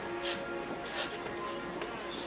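Soft background music with steady held notes, with a few short swishes on top.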